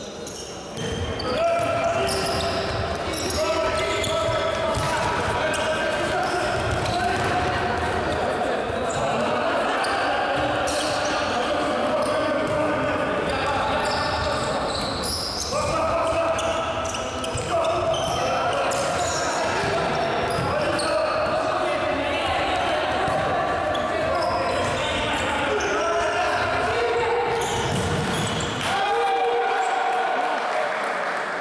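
A futsal ball being kicked and bouncing on a wooden indoor court, with voices calling out across an echoing sports hall. It gets louder about a second in.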